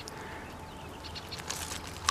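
Quiet outdoor background with a few faint clicks and rustles near the end, from a plastic-mesh crayfish trap being handled and turned.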